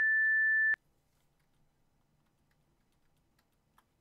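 A single steady electronic beep, one pure tone lasting about three quarters of a second, followed by a few faint clicks.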